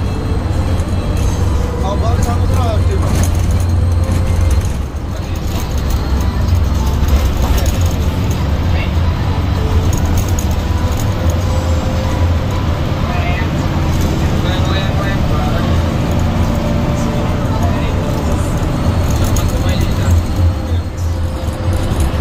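Hino AK8 bus's engine and road noise heard inside the moving bus's cabin, a steady low drone, with indistinct voices and music in the background.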